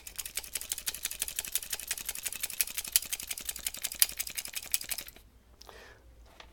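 Automatic pruning shears clicking rapidly and evenly as their blades are worked for about five seconds, then stopping suddenly. The tool is being cleaned because it snags on new shoots.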